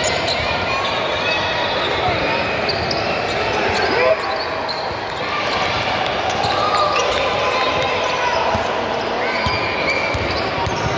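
A basketball dribbling on a hardwood gym floor under the steady chatter of players and spectators, with a sharp knock about four seconds in.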